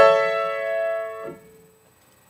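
A single three-note chord struck once on an upright piano with the weight of the arm. It rings and fades for about a second and a quarter, then is cut off as the keys are let go.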